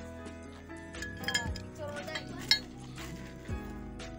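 Metal tube parts clinking together a few times, the loudest clink about two and a half seconds in, over background music.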